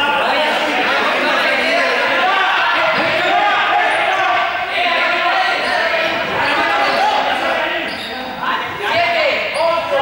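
Echoing sports-hall game noise: several players' voices talking and calling over one another, with a ball bouncing on the court floor.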